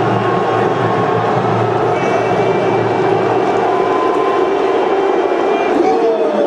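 Television football broadcast sound: a commentator talking over a steady wash of stadium noise.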